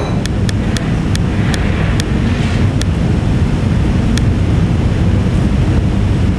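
A run of sharp clicks, about three or four a second, that stop about halfway through as a list is scrolled down on a laptop. Under them runs a loud, steady, low rumble like air buffeting the microphone.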